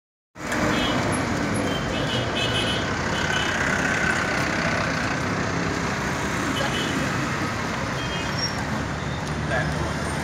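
Roadside traffic noise: the steady hum of buses and other vehicles running and passing, with faint voices of people nearby.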